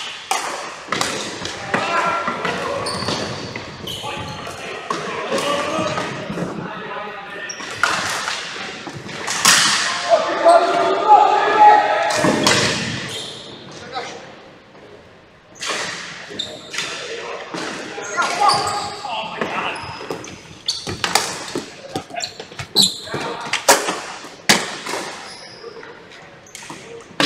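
Ball hockey play on a gym's hardwood floor: sharp clacks of sticks striking the ball and the floor, echoing through the large hall. Players' voices shout, loudest about halfway through, and the clacks come thicker near the end.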